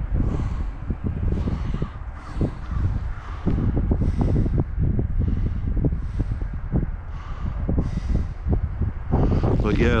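Gusty wind buffeting the microphone: a low rumble that rises and falls throughout, with short raspy sounds repeating about once a second above it.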